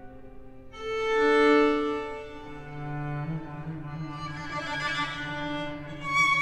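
String quartet playing long held notes. A soft chord swells up about a second in and fades, then the cello comes in with a low held note under high, shimmering string sound.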